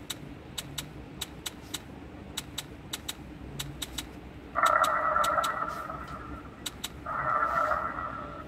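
Online roulette app's chip-placement clicks, a quick string of sharp ticks as bets are laid across the table. Two louder, buzzy electronic sounds follow about four and a half and seven seconds in, each under a second long.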